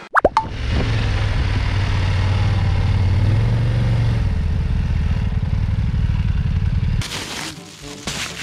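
A short falling plop at the start, then an adventure motorcycle's engine running steadily while riding a dirt track, heard from on the bike, its note dropping slightly about four seconds in. The engine sound cuts off suddenly near the end.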